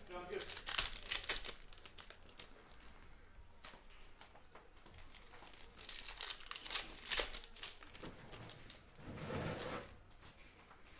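Foil wrapper of a Donruss Optic football card pack torn open and crinkled by hand. The crackling comes in bursts, about a second in and again around six to seven seconds in.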